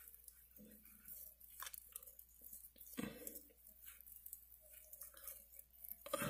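Fingertips rubbing lotion into the skin of the cheek: faint, intermittent soft rubbing sounds, the loudest about three seconds in.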